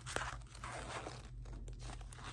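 Handling of a small zippered change purse with coins inside: irregular rustling and scraping with a few short clicks.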